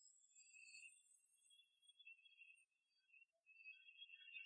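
Near silence, with faint, thin high-pitched tones held for a second or so at a time.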